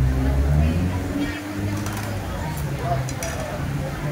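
Busy open-air food-stall background: people talking, a low engine hum that is loudest in the first second and then fades, and a few faint metallic clicks.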